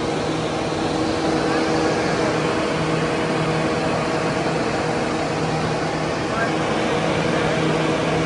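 Several radial air movers running together: a steady rush of blown air over a low, even motor hum.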